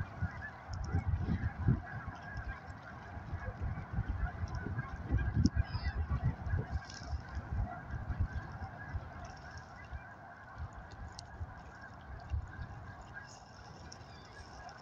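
A large flock of geese honking in flight, many calls overlapping into a steady chorus, with irregular low rumbling underneath.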